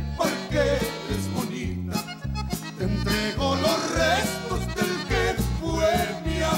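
Live conjunto music: a man singing lead over accordion, guitar, a walking bass line and a drum kit keeping a steady beat.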